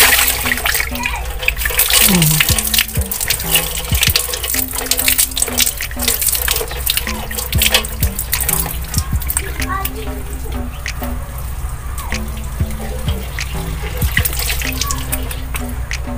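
Water splashing and pouring as soap lather is rinsed off a face by hand, with water scooped from a dipper since there is no tap: irregular wet splashes throughout, over background music.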